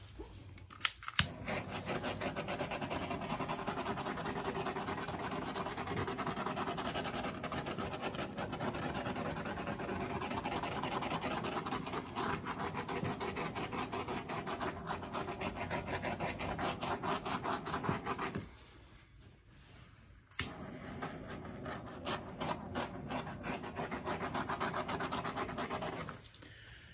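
Handheld butane torch clicked alight and burning with a steady hiss over wet acrylic pour paint to bring up cells. It shuts off after about eighteen seconds and is clicked back on two seconds later, burning on.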